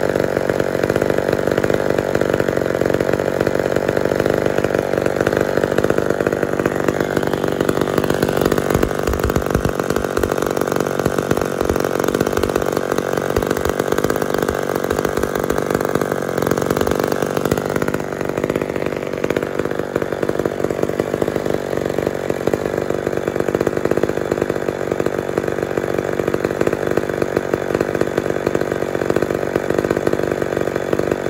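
McCulloch MAC 10-10 two-stroke chainsaw idling steadily on its own, its note shifting slightly about eighteen seconds in. The idle is holding after the low-speed carburetor circuit has been adjusted.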